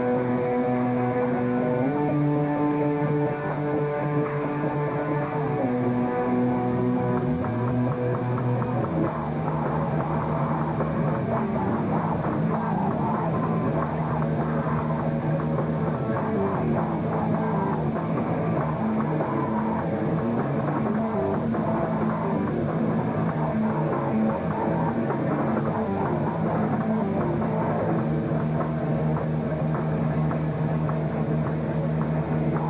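A live hardcore band with distorted electric guitars and bass, loud. Slow, sustained chords shift pitch every few seconds before the full band, drums included, plays on in a denser, faster passage from about nine seconds in.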